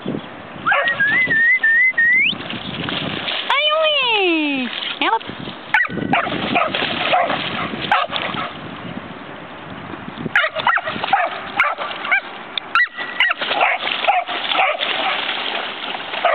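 Australian kelpie puppy whining and yelping excitedly while splashing through shallow water. A high wavering whine in the first two seconds climbs sharply at its end. Later come sloshing splashes broken by short yelps.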